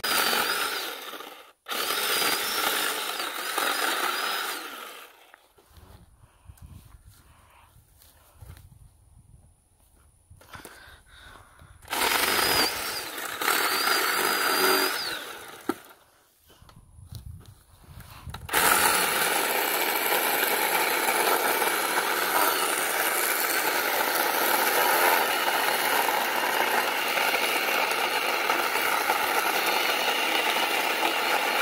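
Cordless electric chainsaw cutting a small log, with a high whine over the chain noise. It runs in short bursts at the start and again in the middle, with quiet pauses between, then steadily through the last third.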